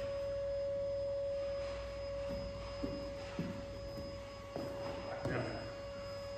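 A steady single-pitched electrical hum runs throughout, with a few soft thuds of hands and knees on rubber gym mats as a man comes down from a wall handstand to kneeling, from about two seconds in.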